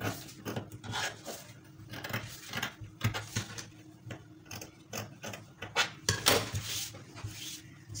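Scissors cutting through folded fabric in a run of short snipping strokes, with the cloth rustling against the table; a louder rustle comes a little after six seconds.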